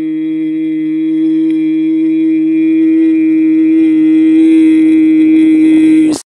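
A single long note held at one unwavering pitch, with a rich buzzy set of overtones, slowly growing louder.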